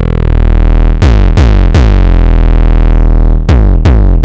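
Behringer Neutron analog synthesizer playing an 808-style kick-and-bass patch: deep sustained bass notes, each opening with a bright click that quickly darkens. A quick run of three notes comes about a second in, and two more near the end.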